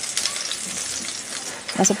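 Crushed garlic cloves sizzling in hot oil in a nonstick wok while a slotted spoon stirs them, a steady fine crackle at the sauté stage. A voice comes in just before the end.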